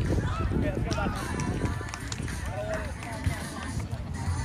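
Indistinct voices of several people talking, none of it clear words, over a steady low rumble of wind on the microphone.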